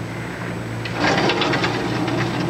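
A door being rattled: a rapid clatter of wooden door and latch hardware that starts about a second in, over a steady low hum.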